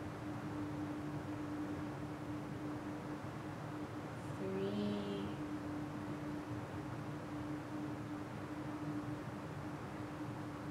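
Steady background noise of heavy rain outside the building, with a constant low hum beneath it. About halfway through, a short faint pitched sound rises briefly above it.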